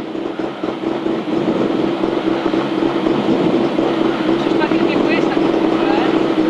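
Renault Clio Williams rally car's 2.0-litre four-cylinder engine running at steady revs inside the cabin while the car stands still, with no revving up or down.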